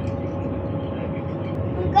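Steady interior noise of a passenger train carriage: a low, even rumble with a constant hum running under it.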